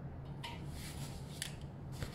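Hand screwdriver driving a screw into a wooden rack frame: a few short scraping clicks, the sharpest about one and a half seconds in, over a steady low hum.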